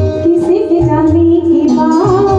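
A woman singing a Hindi song into a microphone, holding long gliding notes, over live electronic keyboard accompaniment with a repeating bass line underneath.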